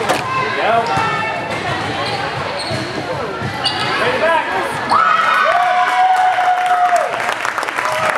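A volleyball rally on a hardwood gym court: the ball is struck and bounces with sharp smacks, under players' shouts and calls. About five seconds in comes one long held shout lasting about two seconds.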